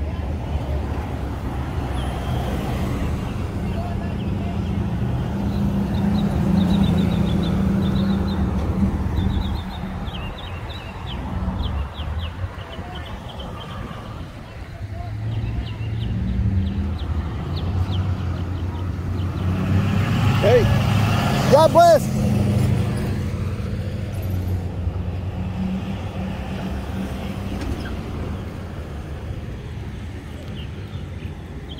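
Street traffic: vehicle engines and tyres give a steady low rumble. A louder vehicle passes about twenty seconds in.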